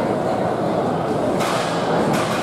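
Rake dragging through the sand of a long jump pit, one short scraping swish about one and a half seconds in, over steady crowd chatter in a large indoor hall.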